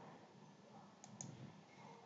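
Near silence with two faint, sharp computer-mouse clicks about a second in, opening the web browser.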